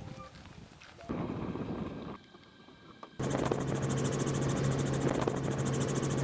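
Helicopter cabin noise: a loud, steady drone of engine and rotor with a strong low hum, starting abruptly about three seconds in. Before it there are quieter outdoor sounds, with a short burst of noise about a second in.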